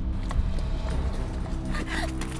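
Background music: a dark score of low, held tones.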